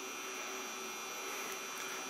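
Steady low hum and hiss of room tone, with no distinct key clicks.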